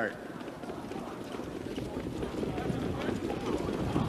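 Hoofbeats of a field of harness pacers moving behind the mobile starting gate: a fast, steady patter that grows slowly louder.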